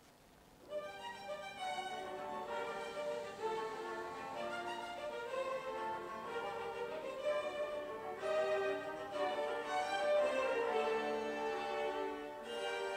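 Classical music led by a violin, with sustained bowed notes and a melody over other held notes; it begins just under a second in.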